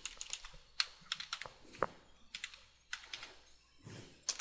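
Typing on a computer keyboard: a string of irregular, separate keystrokes as a short name is typed in.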